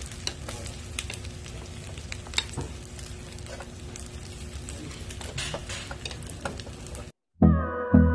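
Food sizzling as it fries, with scattered light clicks. It cuts off abruptly about seven seconds in, and background music with a steady beat starts near the end.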